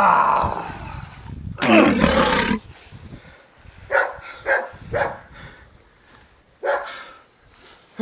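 Wordless yells from men's voices: a long, loud one about two seconds in, then several short ones.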